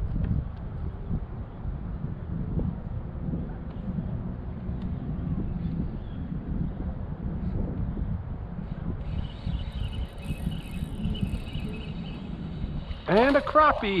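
Wind buffeting the microphone as a steady low rumble, out on open water from a boat. A faint thin high whine comes in during the last few seconds, and a man's excited shout begins just before the end.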